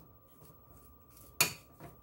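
A metal fork clinks sharply against a glass bowl about one and a half seconds in, with a fainter clink just after, while mashing hard-boiled egg yolks with mayonnaise.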